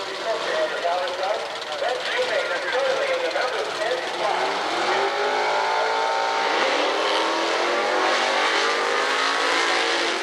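Super Pro drag cars leaving the starting line: the engines rise steadily in pitch as the cars accelerate away, from about four seconds in.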